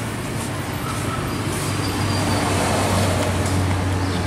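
Steady road traffic noise with a low, even engine hum.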